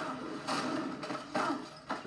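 Action-scene sound effects from a film fight clip playing through computer speakers: a few sudden noisy hits, roughly a second apart.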